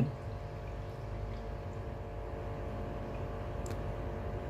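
Water running steadily from a hose into a partly filled aquarium as the tank is being filled, with a faint steady hum underneath.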